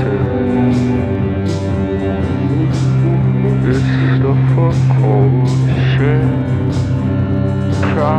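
A post-punk song played by a band: a sustained electric bass line and held keyboard tones, with a drum-machine beat of short hissing hits. A voice sings a line in the middle.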